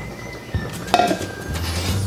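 Sliced squash and zucchini dropping from a glass measuring cup into a saucepan, then a single sharp clink of glass about a second in, with a short ring. Background music plays under it.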